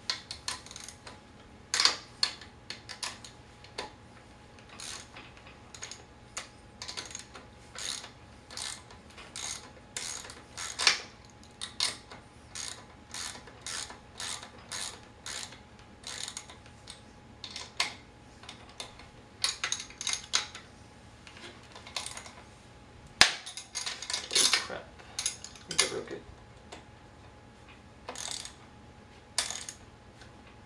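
Metal hand wrench being worked on a wheelchair's brake mounting bolts to tighten them snug: a run of irregular metallic clicks, sometimes several a second, with one sharper knock past the middle.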